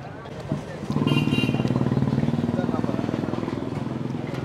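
A small vehicle engine, motorcycle-like, running close by with a fast, even beat. It comes in about a second in and eases off slowly, over background voices.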